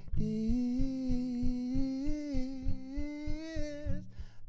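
A man's voice holding one long hummed note that bends slightly in pitch, over steady acoustic guitar strumming at about three to four strokes a second.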